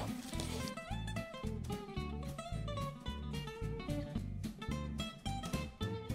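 Quiet background music: quick plucked notes over a repeating bass line.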